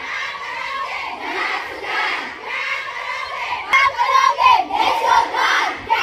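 A crowd of schoolgirls shouting slogans together in repeated bursts, getting louder about two-thirds of the way in.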